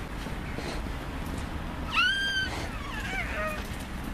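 A short, very high-pitched cry about two seconds in, rising and then held for about half a second, followed by a softer, lower cry that falls in pitch.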